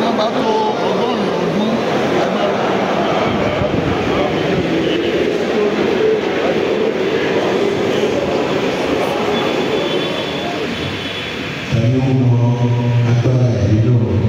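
Many voices of a congregation sounding together. About twelve seconds in, a louder, steady low pitched tone sets in and holds to the end.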